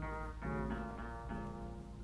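Slow blues guitar picking single notes, about three a second, on a lo-fi portable reel-to-reel tape recording with a steady low hum beneath.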